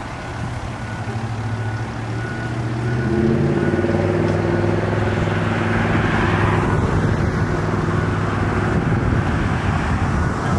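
Fire engine's diesel engine running, with short, evenly spaced beeps in the first couple of seconds. The engine grows louder and picks up about three seconds in as the truck moves, and a car passes close by in the middle.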